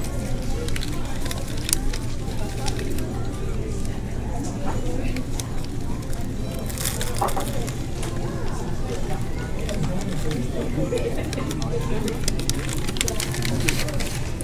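Paper sandwich wrapper crinkling as a Chinese hamburger is handled and bitten into, heard as scattered crackles over a steady bed of background music and indistinct chatter.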